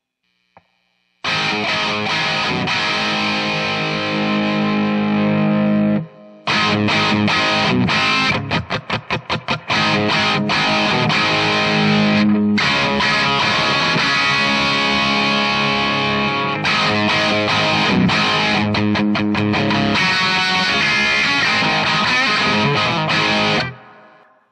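Les Paul electric guitar played through a distorted Marshall amp, close-miked with a Shure SM57 and a Sennheiser on the left and right channels: rock chords let ring, a run of short muted chugs around 8 to 10 seconds, and brief breaks near 6 and 12 seconds. It starts about a second in and stops just before the end.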